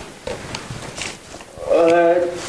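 A few soft knocks and rustles, then about a second and a half in a loud, drawn-out, moo-like vocal sound.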